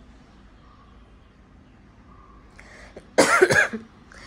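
A woman coughs once, loudly, about three seconds in, after a few seconds of quiet room tone.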